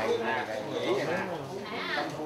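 Several voices overlapping in a murmur of talk, with wavering pitch.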